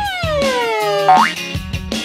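Cartoon comedy sound effect over background music: a long falling tone lasting about a second, then a quick upward zip.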